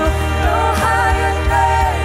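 Live contemporary worship music: women singing the lead, backed by a band with bass and a steady drum beat.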